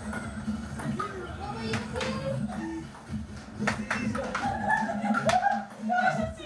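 Ping pong ball clicking off paddles and the table during a rally, several sharp knocks at uneven spacing, over raised voices and background music.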